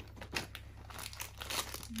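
Hands rummaging in a foil-lined insulated cooler bag compartment, the lining and packaged snacks crinkling and rustling in quick, irregular crackles.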